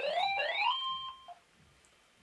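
Mobile phone ringtone: electronic tones that sweep upward in pitch, repeated, stopping a little over a second in.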